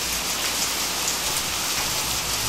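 A steady, even hiss with faint scattered ticks, a rain-like noise texture within an electronic music track.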